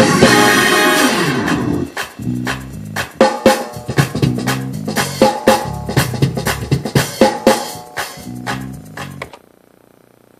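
Playback of a raw, unmixed gospel reprise with organ, piano, horns and drums. A full held chord fades over the first couple of seconds, then the band plays punctuated hits over bass notes, and the music stops about nine seconds in.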